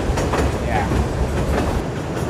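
Passenger train running, heard from inside a carriage: a steady low rumble with scattered clicks of the wheels over the track.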